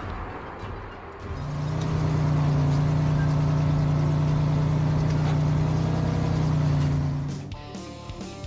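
Truck engine running steadily: a low, even engine tone that comes in about a second in, holds without change of pitch, and stops shortly before the end. Quiet background music plays underneath.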